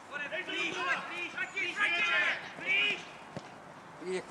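Shouted calls of players and onlookers across an open football pitch, unclear and coming in short bursts through the first three seconds, then a single sharp knock near the end.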